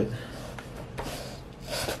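A cardboard trading-card booster box being handled, with soft rubbing and scraping of hands on its surface and a brief louder rustle near the end.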